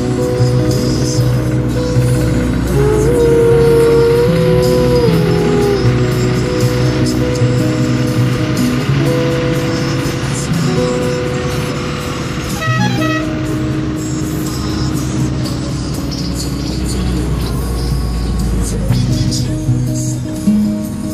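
Background music: a song with a steady guitar accompaniment and a held, gliding melody line.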